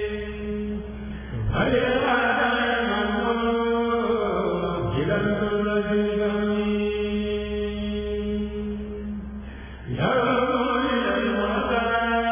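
A kurèl, a group of Senegalese Sufi chanters, chanting a qasida together in long held phrases. New phrases start about a second and a half in and again near the end.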